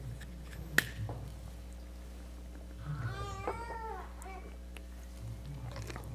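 A man drinking from a plastic water bottle over a steady low hum. There is a single sharp click about a second in, then a brief wavering, high-pitched sound near the middle.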